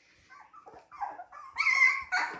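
Siberian husky puppies whimpering in a string of short, high squeaks that grow louder, the loudest and longest near the end.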